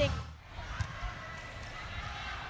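Quiet volleyball arena ambience: a low crowd hum, with a couple of soft knocks of play on the court about a second in.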